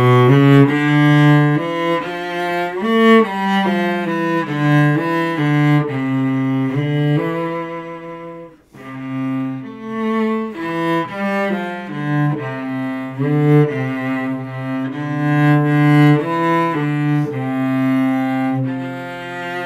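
Solo cello played with the bow: a melody of separate held notes, with a brief break in the phrase about eight and a half seconds in before the playing picks up again.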